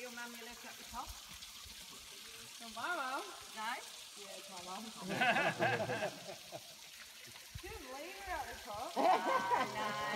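Voices of people talking and calling, too indistinct to make out, in three short stretches over a soft steady hiss of trickling water.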